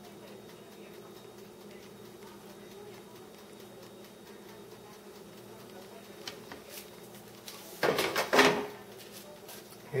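A steady low hum, with a few faint ticks, and a short loud sound about eight seconds in.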